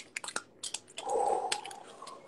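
Foil Pokémon booster pack being handled and crinkled: scattered short crackles and clicks, then a denser rustle about a second in.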